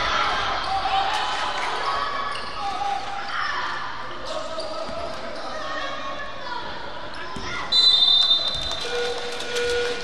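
Indoor youth basketball game: a basketball bouncing on a hardwood gym floor, sneakers squeaking, and children's voices echoing in the hall. About eight seconds in, a referee's whistle blows sharply for about a second, stopping play.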